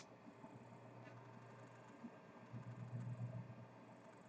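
Near silence: quiet room tone with a faint steady low hum and one brief click at the very start.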